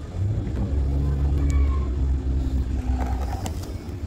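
A motor vehicle's engine running close by, a steady low hum that eases off slightly near the end.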